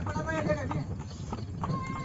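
Horse's hooves clip-clopping on a paved road as it pulls a tonga horse cart, in separate, uneven strikes. A faint voice sounds in the background near the start.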